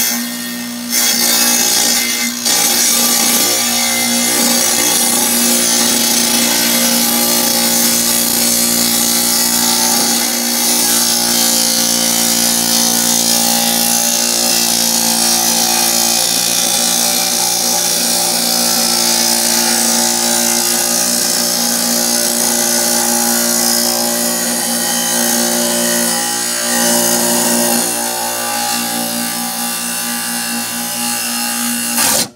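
Kobalt wet tile saw running with its blade cutting through a firebrick: a steady motor hum under a loud grinding hiss, with a couple of brief dips in the first few seconds.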